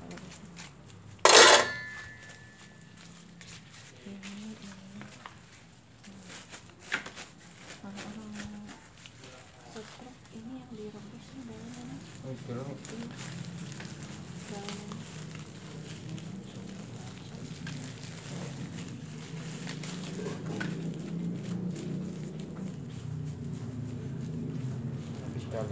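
Indistinct voices in the background, with one loud, sharp clatter about a second and a half in that rings briefly.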